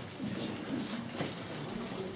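Low murmur of voices in a room full of people, with a few soft rustling and handling noises.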